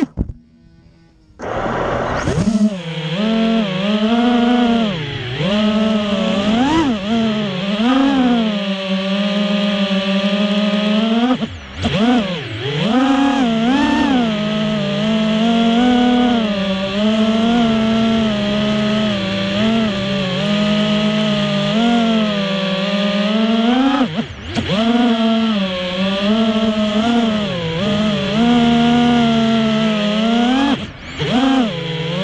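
FPV racing quad's brushless motors spinning Ethix S3 propellers, heard from the onboard camera: a loud buzzing whine that rises and falls with the throttle and drops out briefly twice. A sharp knock comes at the very start, and the motors spool up about a second and a half in.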